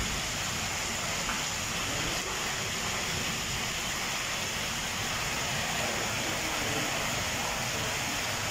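Steady rain falling on a wet paved courtyard floor, a continuous even hiss of drops.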